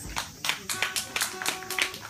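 Guitar percussion on a nylon-string acoustic guitar: about ten sharp hand knocks on the guitar body in an uneven rhythm, with a few string notes ringing between them.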